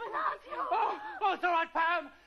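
A person laughing in a quick run of high-pitched pulses, about five a second.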